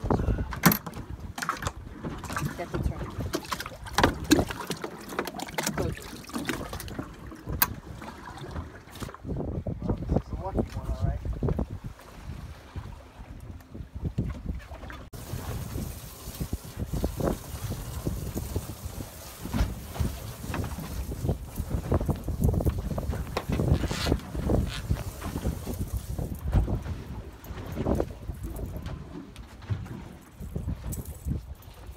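Wind gusting over the microphone aboard a small boat at sea, with water moving against the hull. A few sharp knocks come in the first ten seconds.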